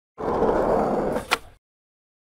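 A loud, rough burst of noise lasting about a second, ending in a single sharp crack, then cutting off.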